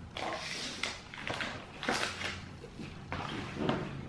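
Cardboard granola-bar boxes being picked up and handled on a wooden table: a run of rustling scrapes and sharp knocks, with a bite of chewy granola bar being chewed.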